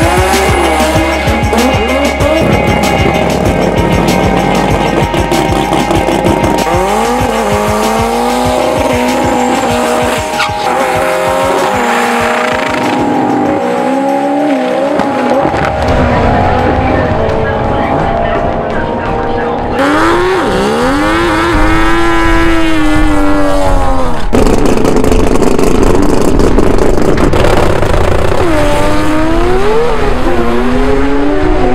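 Drag-race cars under a music track: tyres squealing in a smoky burnout, and engines revving hard as the cars launch down the strip, the loudest run about 20 seconds in.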